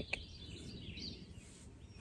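Faint outdoor ambience: a low steady background noise with a few faint bird chirps, and a soft tap right at the start.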